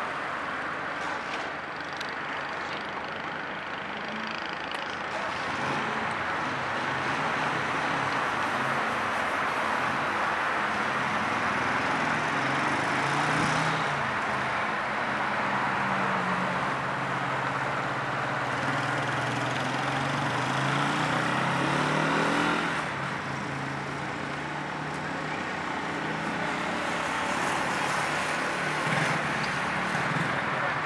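An engine running with a low hum that slowly drifts down in pitch, over a steady rush of outdoor noise; the engine sound drops away suddenly about 22 seconds in.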